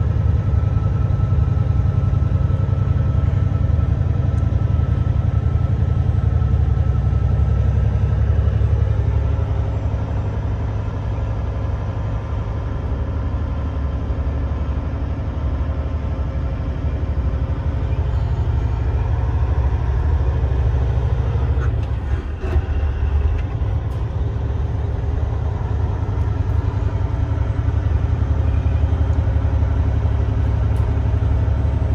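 Semi-truck diesel engine and road noise heard from inside the cab while driving, a steady low drone. It eases a little about a third of the way in and dips briefly about two-thirds of the way through.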